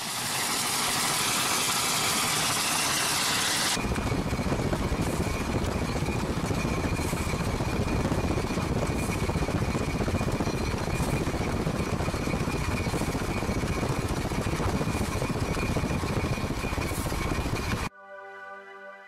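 Steady freeway traffic and wind noise heard from a moving vehicle while a steam locomotive runs alongside. A bright hiss cuts suddenly about four seconds in to a fuller, steady rumble with a faint high whine in it.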